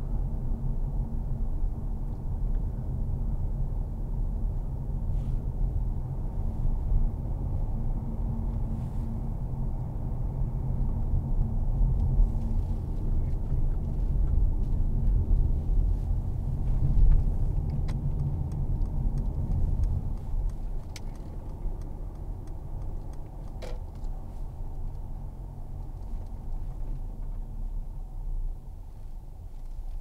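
Cabin noise of a 2015 Mercedes-Benz C300 BlueTEC Hybrid being driven: a steady low rumble of road and drivetrain, which grows quieter after about twenty seconds as the car slows. There is one sharp click about three-quarters of the way through.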